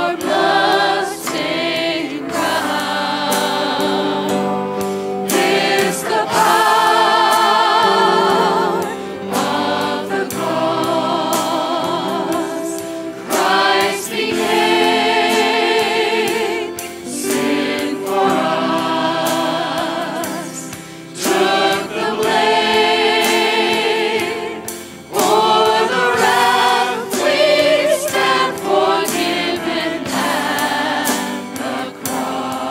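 Church choir and lead singers performing a worship song with band accompaniment, in sung phrases of a few seconds with long held notes and vibrato, over a steady percussive beat.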